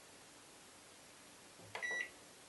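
Near silence, then near the end a single short, high electronic beep from a microwave oven's control panel as one of its buttons is pressed to set the programme.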